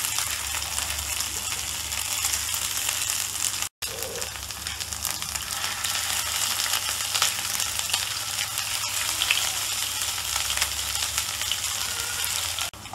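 Cornflour-battered chicken strips shallow-frying in hot oil in a nonstick pan: a steady, dense sizzle with fine crackling as pieces are added. The sound cuts out for an instant a little before four seconds in.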